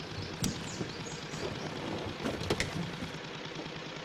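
Car engine running with a steady low rumble, with a couple of small clicks about half a second and two and a half seconds in.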